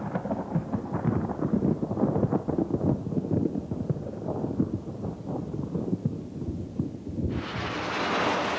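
A low, crackling thunder rumble that slowly dies away. About seven seconds in it gives way to the rushing roar of a jet airliner's engines as it climbs.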